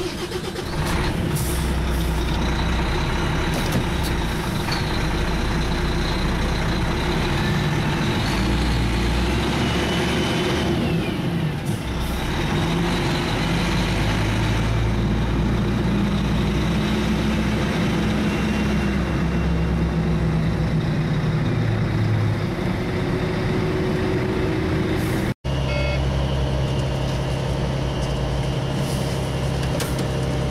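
Volvo FH13 480 truck's diesel engine heard from inside the cab, running steadily at low speed, its pitch stepping and gliding up and down as the truck moves off and turns.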